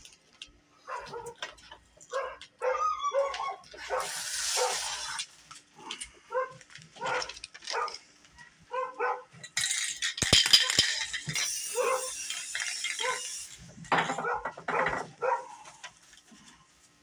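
Aerosol spray paint can hissing in two bursts, one about four seconds in and a longer one from about ten to thirteen seconds, among many short, sharp sounds.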